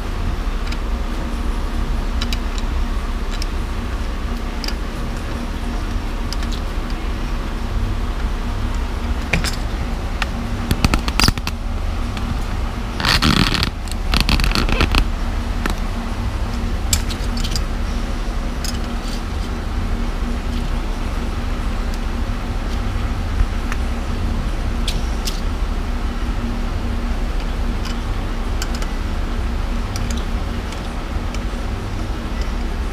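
Steady fan hum with scattered metallic clicks and knocks from hand tools on a cast cylinder head. About 13 seconds in comes a brief harsh rasping burst, then a shorter one.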